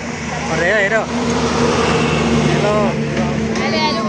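Street traffic noise: a motor vehicle's engine running with a steady low hum and a rush of road noise that grows louder about a second in, under brief snatches of people's voices.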